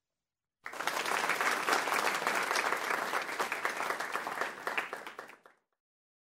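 Audience applauding, starting about half a second in, holding steady, then thinning out and stopping shortly before the end.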